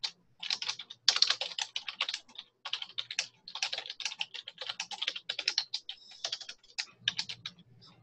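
Typing on a computer keyboard: quick runs of keystroke clicks broken by short pauses.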